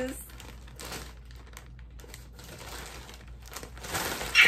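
Plastic mailer bag crinkling and rustling in irregular crackles as it is handled and pulled open.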